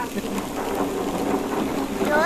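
Steady hiss of a pan of food sizzling on a wood-fired clay stove.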